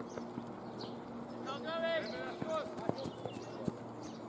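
Open-air ambience at a cricket ground: birds chirping, a distant wordless shout about one and a half seconds in, then a scatter of sharp, irregular clicks in the second half.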